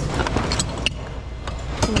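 Hands rummaging through a bin of mixed household goods: a few light clicks and knocks of objects being moved, over a steady low rumble of handling and store background.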